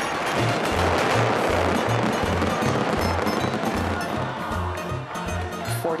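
Dense, continuous barrage of Mascletà firecrackers in the final earthquake-like blasts, thinning toward the end, under background music with a steady bass beat.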